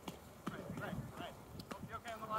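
Irregular dull knocks of foam-padded weapons striking shields and each other in a melee, mixed with faint distant voices.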